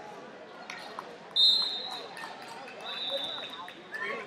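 A referee's whistle blown in a wrestling hall: a sharp, loud blast about a second and a half in, then a fainter, longer blast about three seconds in, over background shouting and voices.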